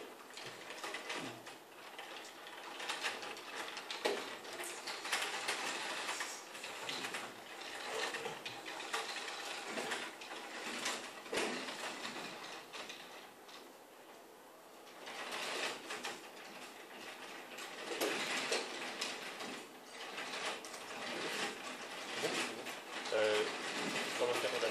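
Electric drive motors and gearing of a small mobile manipulator robot whirring as it drives across a tiled floor on its mecanum wheels, growing louder and softer in stretches, with a quieter lull about halfway through.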